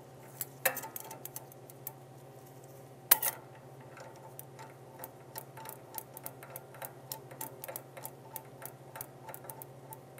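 Small metal clicks and taps as the steel Warner-Bratzler shear blade is fitted to its holder and its screw is turned in by hand: two sharper knocks in the first few seconds, then a quick, irregular run of light ticks. A steady low hum runs underneath.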